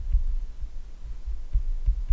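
A stylus writing on a tablet, heard as a run of irregular low thuds, several a second, over a low steady hum.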